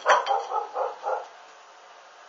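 A dog barking, a short run of about five barks in the first second and a half, the first the loudest.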